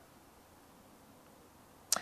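Near silence with faint room tone, broken by one short sharp click near the end.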